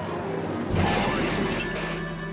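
A cartoon crash sound effect of two small produce carts colliding: a sudden loud crash about two-thirds of a second in that fades over the next second, over background music.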